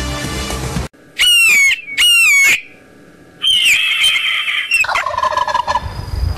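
Intro music cuts off about a second in, followed by bird-call sound effects: two loud, descending hawk screeches, then a longer wavering high call and a turkey gobble near the end.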